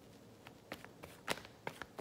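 A deck of tarot cards shuffled by hand: a quick run of soft card slaps and clicks starting about half a second in, the loudest a little past the middle.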